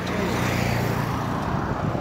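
A motor vehicle passing on the road close by: a low engine hum with tyre noise that builds up and is loudest around the middle.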